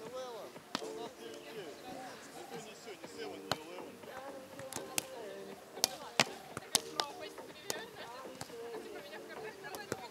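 A volleyball being struck by hand in a string of sharp slaps, several close together around the middle, over the chatter of voices.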